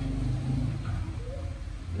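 Low motor-like hum, strongest in the first second and then fading, with faint voices in the background.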